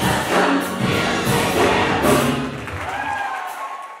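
Gospel choir singing with instrumental accompaniment; about three seconds in, the low accompaniment drops away, leaving a held note that fades out.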